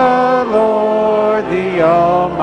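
Church choir singing slowly in long held notes, one note sustained for nearly a second in the middle.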